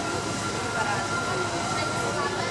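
Panama Canal Mitsubishi electric towing locomotive (mule) running along its lockside rack track, with a steady high whine setting in about half a second in over a constant background rumble.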